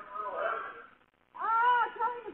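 Two high-pitched, drawn-out vocal calls, each rising and then falling in pitch. The first ends about a second in and the next starts soon after. They are heard thin and narrow through a Ring doorbell camera's microphone.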